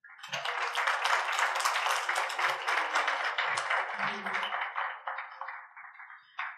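A small audience applauding, starting all at once and thinning out over the last second, with a few voices mixed in.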